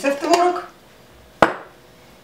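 A woman's voice finishes a few words. After a short pause comes a single sharp clink of a metal spoon against a ceramic bowl, ringing briefly.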